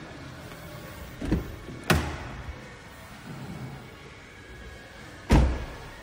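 Three short, loud thumps, the first about a second in, the second just under two seconds in, and the loudest about five seconds in, over faint steady room noise.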